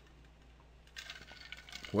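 Faint small clinks and rattles from a plastic drinking cup being handled and set down after a drink, following about a second of near silence.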